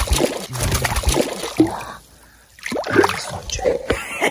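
Water splashing and rustling handling noise as a small catfish is let go back into the river. A man's voice shouts near the end.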